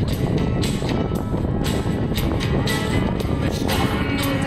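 Acoustic guitar strummed in a steady rhythm, playing an instrumental passage of a song through a PA.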